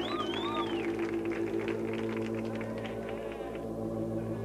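Synthesizer intro of an early-1980s electro-pop song: a sustained low synth chord holding steady, with high gliding whistles in the first second and audience applause dying away by about three and a half seconds in.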